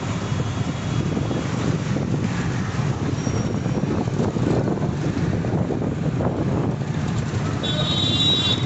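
Steady low rumble of outdoor street noise, with a brief high-pitched tone near the end.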